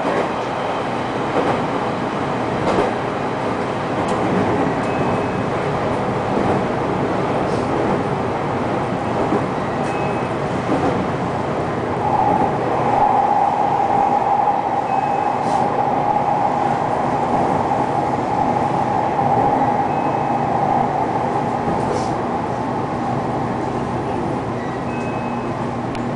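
A JR Kyushu 813 series electric train running, heard from inside the front car as steady running noise from the wheels and rails. About halfway through, a steady high squeal sets in and holds as the train rounds the curve into the station.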